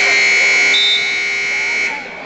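Gym scoreboard buzzer sounding one steady, loud note for about two seconds, then cutting off, marking the end of a wrestling period.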